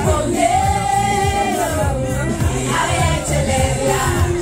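Karaoke singing over a loud backing track with heavy bass; the voice holds one long note that bends up and down, then sings shorter phrases.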